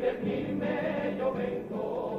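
A Cádiz carnival comparsa's male chorus singing together. The old recording sounds dull, with no high treble.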